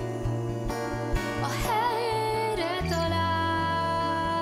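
Acoustic guitar playing a plucked accompaniment while a female voice sings a long note with vibrato from about a second and a half in; a new low guitar note comes in near the three-second mark.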